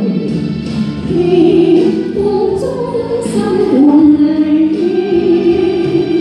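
A woman singing a Chinese-language ballad into a handheld microphone over backing music, her voice holding and sliding through long sustained notes.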